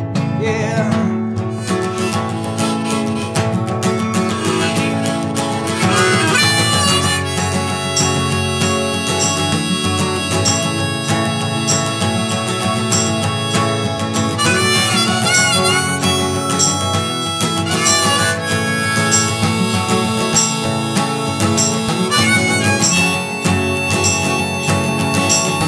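Harmonica playing the melody over a steadily strummed acoustic guitar: an instrumental harmonica break in a folk song.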